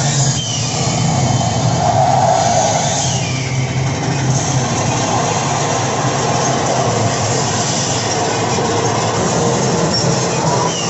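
Roller-coaster ride film soundtrack played loud over motion-theatre speakers: a steady rumble and rattle of a coaster car running along its track.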